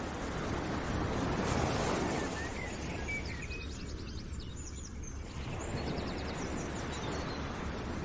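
Steady outdoor-style background noise with small birds chirping over it, the chirps clustered in the first half.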